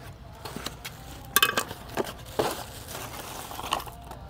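A few light clicks and rustles of small objects being handled on a table, the sharpest about a second and a half in.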